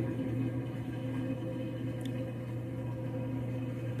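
A steady low background hum with a faint single click about two seconds in.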